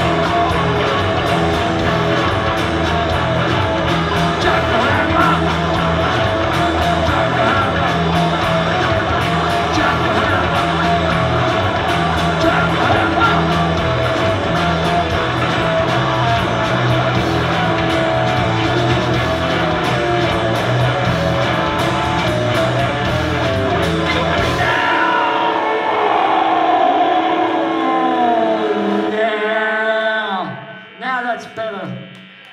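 Live rock band playing loud: distorted electric guitar, bass and drums with a vocal. About 25 seconds in the bass and drums stop, and only a few sliding, wavering guitar tones ring on as the song winds down.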